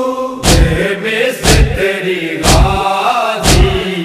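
Group of men chanting a noha in unison, with rhythmic matam chest-beating: four heavy hand strikes on the chest, together, about one a second.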